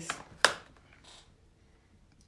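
A single sharp tap about half a second in as hands handle craft things on a wooden table, then a faint brief rustle of paper; otherwise quiet room tone.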